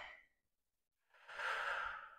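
Near silence, then a single soft breath out, lasting about a second and starting just past the middle, from a woman exercising.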